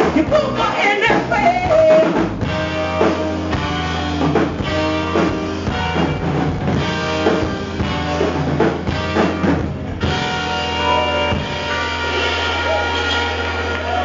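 Live soul band playing: drum kit, bass, keyboards and horns under a female lead vocal. About ten seconds in the drum beat stops and the band carries on with sustained held notes.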